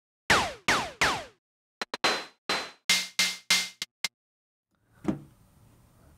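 Sampled Moog DFAM (Drummer From Another Mother) analogue drum hits played one at a time from a keyboard: first three hits with a falling pitch sweep, then a quicker run of about eight shorter clicky hits, some carrying a ringing tone, stopping about four seconds in.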